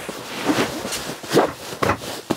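Heavy foam upholstered cushions being laid down and pressed into place on a dinette bed: fabric rubbing and shuffling, with about three dull thumps.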